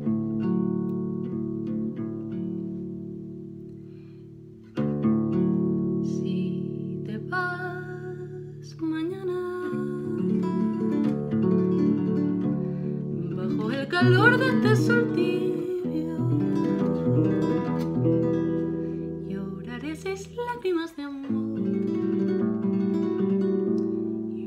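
Classical guitar playing the opening of a slow song: chords struck and left to ring down, a few seconds apart at first, then a busier picked passage that carries on through the rest.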